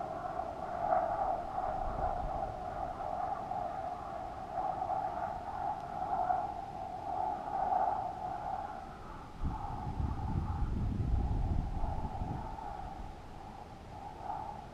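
Wind whistling over the balloon payload's camera housing, a wavering hollow tone that rises and falls in strength. A stretch of low wind buffeting on the microphone comes in about two thirds of the way through and fades a few seconds later.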